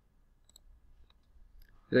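A few faint computer mouse button clicks, the clearest about half a second in and a fainter one near one second.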